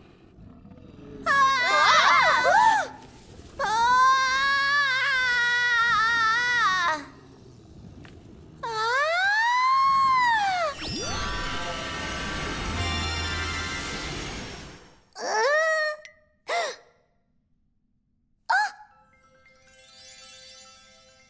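Cartoon music and magical sound effects: a run of swooping, gliding tones, then a held shimmering chord over a low rumble that fades out, then a few short high chirps.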